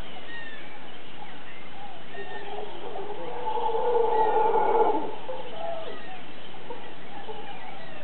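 A mantled howler monkey's roar swells for about two seconds in the middle and then stops, the loudest sound here. Many short bird calls and chirps go on throughout.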